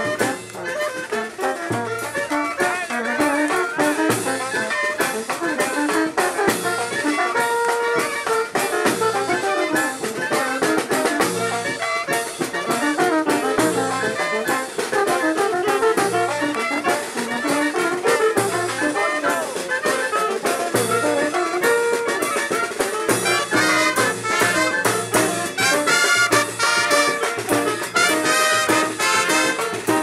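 A small brass band playing live: trumpets, trombone and a low brass horn over snare drum, bass drum and cymbal, keeping a steady beat.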